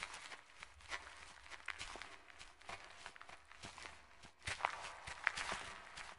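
Cartoon footstep sound effects: a run of quiet, irregular taps and clicks, with a few sharper ones after the middle.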